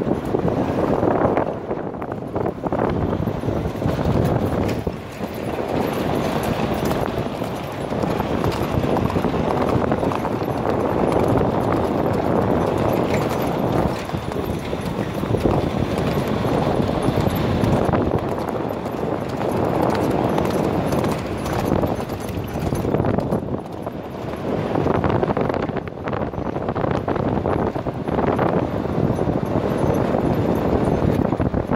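Hoofbeats of a grey Arabian colt cantering under a rider on a sandy dirt track, mixed with the steady running noise of a car driving alongside.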